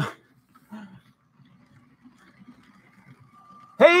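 A man's voice says a short word at the start and begins speaking again near the end, with only faint low background sound in between.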